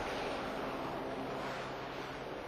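Helicopter with turboshaft engines hovering: a steady rushing noise from its engines and rotor with no distinct beat, easing off slightly toward the end.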